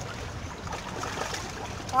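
Steady wash of water along a rocky shore, an even rushing noise with a few faint small sounds in it.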